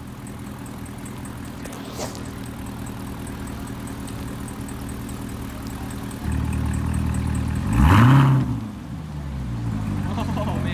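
Corvette ZR1's supercharged V8 running at idle, getting louder about six seconds in. About eight seconds in comes one quick rev that rises and falls in pitch, the loudest moment, before it settles back.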